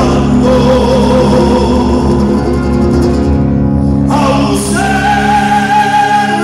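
Live Argentine folk band: male voices singing together over acoustic guitars, electric bass and a bombo legüero drum. Just before four seconds in the sound thins briefly, then a new sung phrase opens on a long, high held note.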